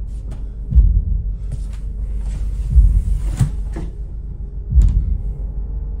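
Deep low thuds repeating about every two seconds, a slow heartbeat-like pulse of horror sound design, over a low hum. Between them come sharp clicks and, around the middle, a rustling scrape, which fit a man sliding down to sit on a wooden floor.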